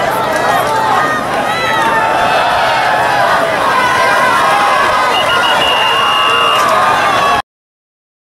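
Football crowd in the stands shouting and talking over one another, with a referee's whistle blowing one steady high note for over a second about five seconds in. The sound cuts off abruptly near the end.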